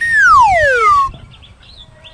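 Comedy sound effect: a loud descending whistle that slides steadily down in pitch for about a second.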